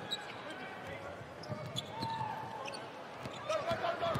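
A basketball being dribbled on a hardwood court, a scattering of short bounces, with faint voices in the arena.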